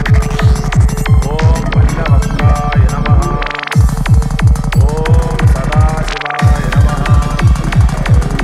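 Psytrance track: a fast, pounding kick drum and rolling bass under short gliding synth notes. The bass drops out briefly about three and a half seconds in and again just after six seconds.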